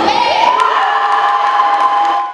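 Children shouting and cheering at a girls' school basketball game, many young voices at once, with a few drawn-out high shouts rising above the rest.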